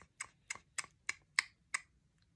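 A run of light, sharp clicks, evenly spaced at about three a second, stopping near the end.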